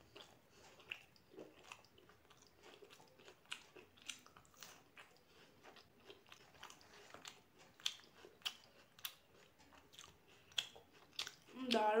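Close-miked eating of puri and chickpea curry: irregular wet mouth clicks, chewing and soft crunches, fairly faint. A voice starts just before the end.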